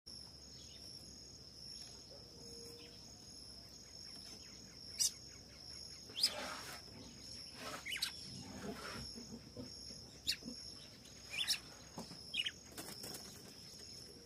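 Red-cowled cardinals giving sharp single call notes, about six spaced a second or two apart, over a steady high insect drone.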